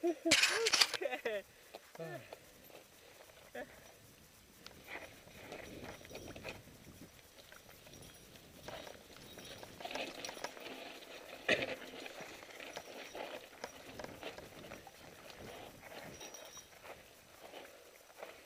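Mountain bike rolling down a dirt trail: faint tyre noise with scattered rattles and knocks from the bike over bumps, and one sharper knock about halfway through.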